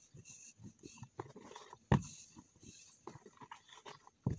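Close handling of a clear plastic tub of dough: rustling and small plastic clicks, with one sharp knock about two seconds in.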